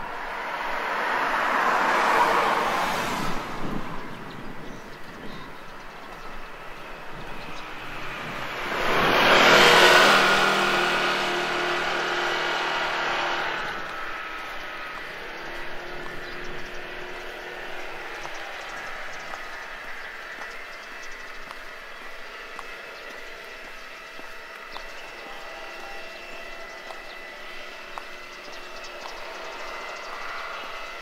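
Two road vehicles passing on an asphalt road: a car whose tyre and engine noise swells and fades about two seconds in, then a louder vehicle passing about ten seconds in, its engine hum trailing off a few seconds later. After that, a quieter steady outdoor background.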